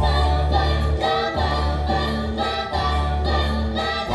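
A small mixed-voice choir singing in close harmony, amplified through headset microphones, over a deep bass line of long held notes about a second each.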